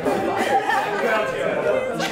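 Many people talking at once: overlapping, indistinct chatter of a group of guests in a large room, with no single voice standing out.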